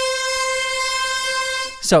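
A sampled note played back from the Native Instruments Kontakt sampler, keyed higher up the keyboard than the sample's root. It is one steady, bright held tone at a fixed pitch that stops just before the end.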